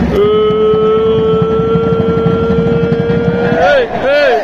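A loud horn-like tone held steady on one pitch for about three seconds, then swooping up and down about one and a half times a second near the end, over arena crowd noise.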